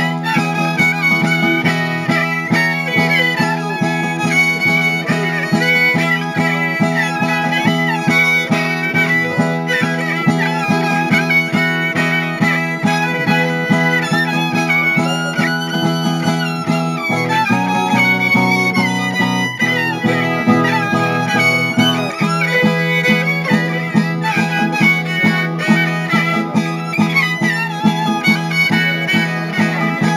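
Traditional Oaș folk music: a cetera (the local violin) plays a high, busy melody over steady strummed chords from a zongura. The chords change about halfway through, and the strumming is regular and even near the end.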